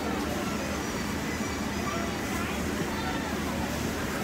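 Steady hum of restaurant-kitchen equipment, with faint voices in the background.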